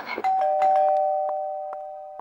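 Two-note ding-dong doorbell chime: a higher note and then a lower one a moment later, both ringing on and slowly fading.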